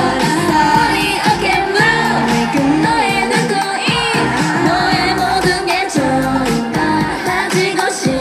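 K-pop song with female group vocals singing over a dance-pop backing track, played loud through a live concert PA.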